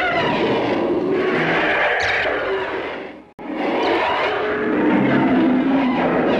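Rodan's kaiju screech used as dialogue: two long, harsh, rasping calls, split by a brief break about three and a half seconds in.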